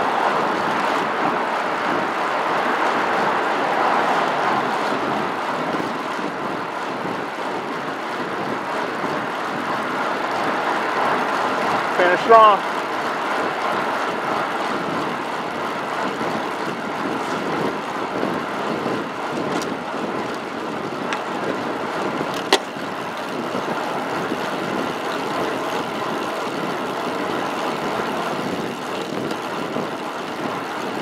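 Steady rush of wind and road noise with passing motor traffic, heard from a helmet camera on a road bike moving fast along a highway. A brief, loud pitched sound cuts through about twelve seconds in, and a sharp click comes near the end.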